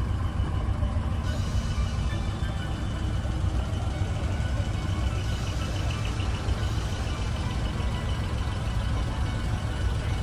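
Steady low rumble of truck engines idling, with faint music in the background.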